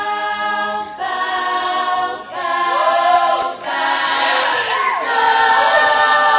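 Women's a cappella group singing held chords in close harmony, with no instruments. The chords change roughly every second, and from about halfway through a solo voice slides up and down over them.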